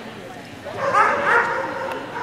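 A dog barking, a quick couple of barks about a second in, over the chatter of people's voices.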